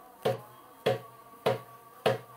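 Darbuka (goblet drum) struck three times, evenly about half a second apart: single bass 'doum' strokes on the centre of the drumhead, demonstrating the drum's deep, wide sound.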